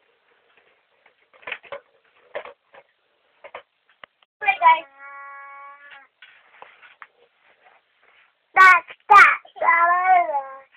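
A baby's short babbling sounds and little vocal noises, with a flat, steady tone held for about a second near the middle. Near the end come several loud voiced calls that bend in pitch.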